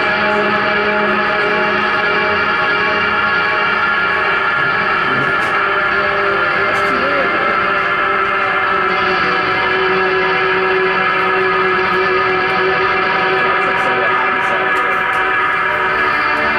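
Live electronic music: a loud, steady drone of many layered held tones, played on electric guitar through electronics, with a few pitches wavering slowly about halfway through.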